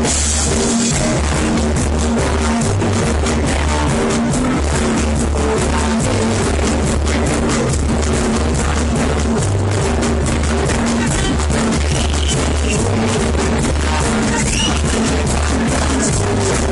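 Live roots reggae band playing, with a heavy, repeating bass line under drums and keyboard.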